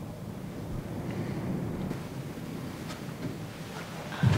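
Steady low background rumble of the location recording's room tone, with a couple of very faint ticks and no speech.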